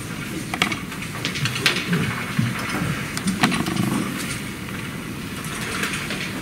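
Irregular light clicks and knocks, about half a dozen spread over the first three and a half seconds, over a low, uneven room background.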